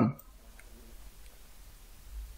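Two faint computer mouse clicks over a low steady hum, just after a man's voice stops at the very start.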